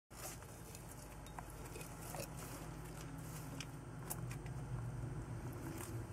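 Faint, scattered clicks and rustles of a blue tegu moving over soil substrate while feeding on roaches at a glass jar, over a low steady hum.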